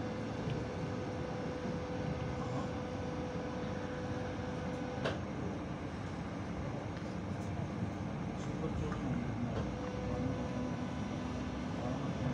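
Interior running noise of a Hannover TW 6000 tram moving along the track: a steady rumble of wheels and running gear, with a steady whine that cuts off with a click about five seconds in and comes back briefly near ten seconds.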